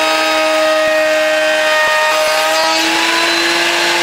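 Benchtop router table running a Roman ogee bit, cutting a profile along a board's edge: a steady high motor whine with cutting noise. The pitch sags slightly under the cut and climbs back about three seconds in as the workpiece comes off the bit.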